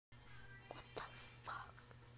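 A whispered voice in three short breathy bursts, about a third to half a second apart, over a steady low hum.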